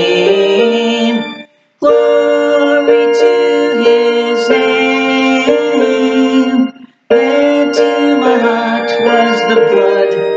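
A hymn played on a keyboard with singing, in held chords that change every second or so. The music breaks off twice between phrases, about a second and a half in and again about seven seconds in.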